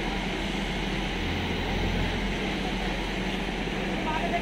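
A large engine running at a steady low hum, with a deeper drone swelling for about a second near the middle.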